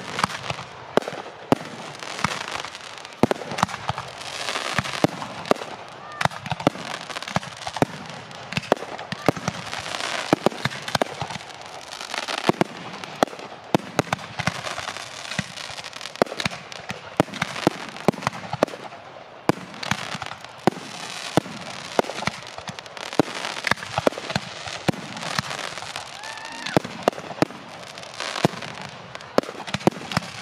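Fireworks display: aerial shells bursting in a continuous barrage, sharp bangs coming irregularly and often several a second, over a steady bed of noise between them.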